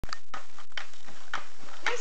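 Skateboard wheels rolling on rough asphalt: a steady rolling noise with a few sharp clicks. A voice starts near the end.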